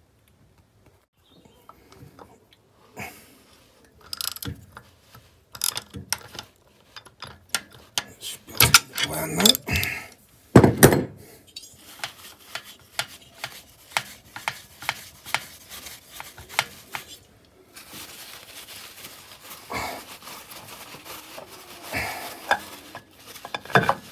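Ratchet and cap-style oil filter wrench working a motorcycle's spin-on oil filter loose: scattered metal clicks and clanks, busiest and loudest about halfway through.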